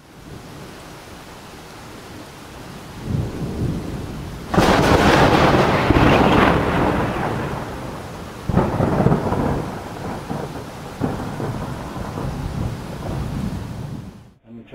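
Thunderstorm: steady rain with rolling thunder, a loud thunderclap about four and a half seconds in that rumbles away over a couple of seconds, and another crack about eight and a half seconds in.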